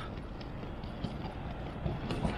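Steady noise of road traffic, with faint footsteps of someone walking on the pavement.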